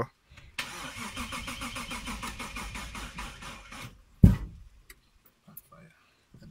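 Lexus IS200's 1G-FE inline-six cranked on the starter for about three seconds with an even pulsing, turning over but not firing: a weak battery and a Speeduino trigger angle set to zero, by the tuner's account. The cranking stops, and a single loud thump follows.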